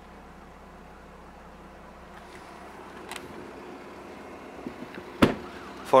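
Steady low background noise, with a faint click about three seconds in and one sharp knock near the end.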